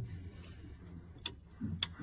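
Two short, sharp clicks about half a second apart in the second half, over faint low background noise.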